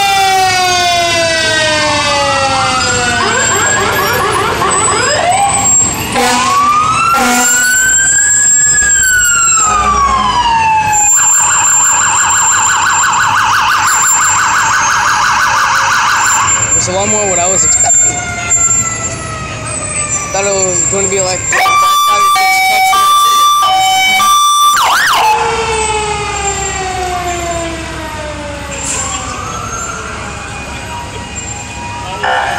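Sirens of several fire vehicles passing one after another, overlapping as they wail slowly up and down. A fast warbling siren comes in around the middle, and a two-tone hi-lo pattern is heard a few seconds before the end.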